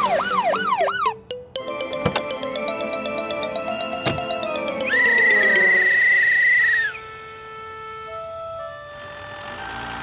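A cartoon police-car siren wailing in quick rises and falls, cutting off about a second in. After a short music cue, a police whistle is blown in one trilling blast from about five to seven seconds in, followed by a few soft music notes.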